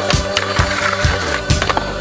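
Skateboard scraping along a concrete ledge and then rolling off on the pavement, over loud music with a steady beat.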